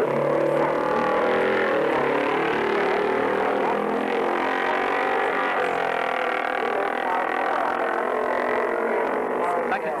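Several racing motorcycle engines running together at high revs, their pitches overlapping and wavering with no break.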